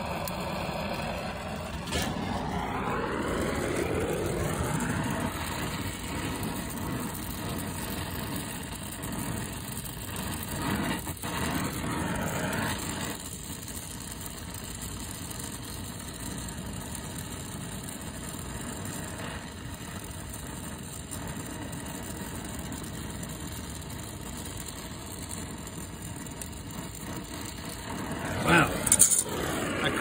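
Acetylene torch flame hissing steadily as it heats a brazed copper elbow on a refrigerant line set to unsweat the joint. The hiss starts about two seconds in and drops to a quieter steady level about halfway through.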